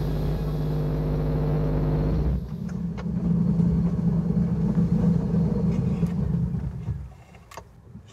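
The motor of an amphibious London taxi running steadily on the water, then cutting out about seven seconds in as its propeller catches on something. A few light clicks follow.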